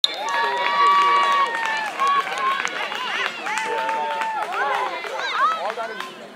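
Several high-pitched children's voices shouting across a soccer field, with long held calls overlapping and then short rising-and-falling shouts near the end.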